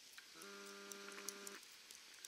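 A faint, steady pitched tone with several overtones, lasting just over a second, over light scattered ticking.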